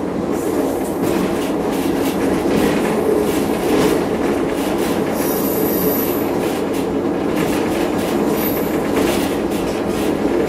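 A train running on a curving single track: a steady rumble with repeated clicks of the wheels over the rails. A high, thin wheel squeal from the curve sets in about five seconds in and returns briefly near the end.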